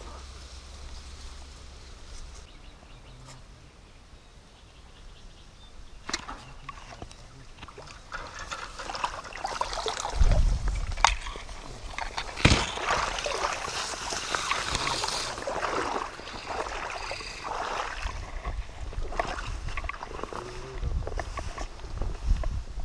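Quiet outdoor background at first, then from about six seconds in a long stretch of rustling and crackling as reed stalks brush past the camera while someone pushes through a reed bed, with a few heavy thumps of handling or footsteps, the loudest two near the middle.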